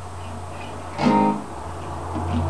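Acoustic guitar being played softly as a song's intro, with one louder chord about a second in.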